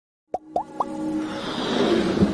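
Logo-intro sound effects: after a moment of silence, three quick rising plops, then a whoosh that swells up.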